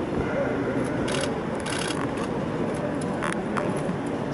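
Indistinct chatter of several voices, with a few short scraping or rustling noises about a second in, near two seconds and just after three seconds.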